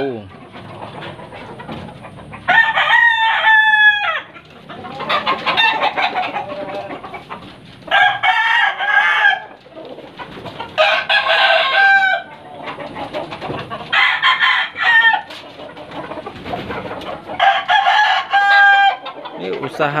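Gamecock roosters crowing again and again: five loud crows, each lasting a second or so, roughly every three seconds, with quieter clucking and calls between them.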